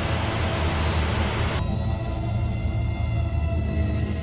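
Television static hiss over a low hum. About a second and a half in, the hiss loses its top and turns into a steady buzzing drone, which starts to fade near the end.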